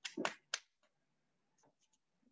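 Three short, sharp clicks in quick succession within the first second.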